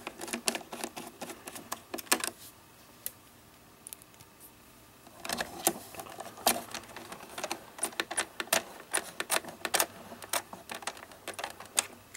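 Small screws being driven into a quadcopter's plastic arm with a precision screwdriver: a run of light clicks and ticks that thins out for a couple of seconds about a quarter of the way in, then picks up again.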